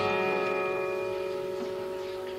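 Acoustic guitars' closing strummed chord at the end of a song, several notes ringing on together and slowly fading away.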